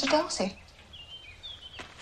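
A short, loud pitched sound lasting about half a second, then faint high bird chirps.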